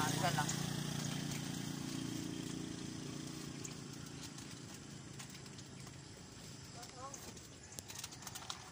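A motor vehicle's engine fading steadily away as it recedes, with a few faint voices.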